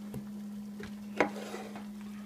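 Water boiling in a saucepan on an electric coil burner, under a steady low hum, with a few light clicks and knocks of things handled on the counter.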